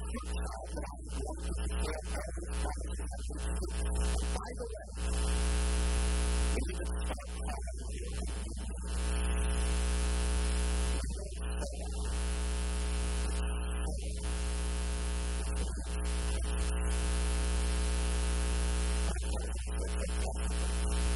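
Loud electrical mains hum with hiss on the recording, a steady buzz with many evenly spaced overtones that swamps the sound. A man's voice comes through it faintly, mostly in the first few seconds.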